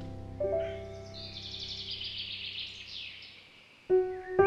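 A songbird singing a quick run of high chirps over the fading notes of a solo piano, with a soft piano note about half a second in. The piano dies away almost to nothing, then a new chord comes in sharply at the very end.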